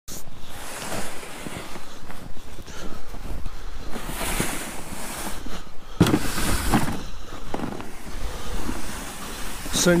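Footsteps crunching through snow while a plastic ice-fishing sled is dragged over the snow, making an uneven scraping hiss.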